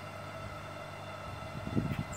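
Electric aquarium diaphragm air pump humming steadily as it pumps air into an inflatable paddling pool, with a short low rumble near the end.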